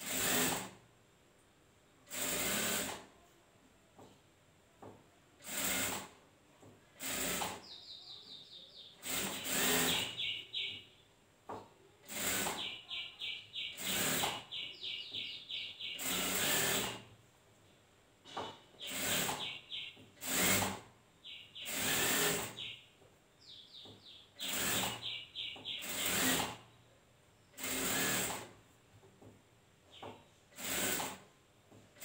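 Industrial sewing machine stitching in short runs of a second or less, about every two seconds, as fabric is fed through in stops and starts.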